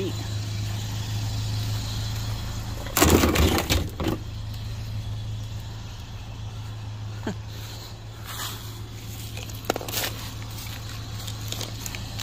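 Pickup truck engine idling with a steady low hum, under the rustle and knock of a bundle of wire and extension cords being handled. The loudest part is a rough burst of about a second, some three seconds in.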